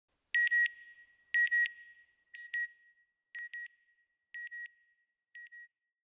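Electronic alarm-style beeping: six pairs of short, high beeps, about one pair a second, each pair fainter than the last.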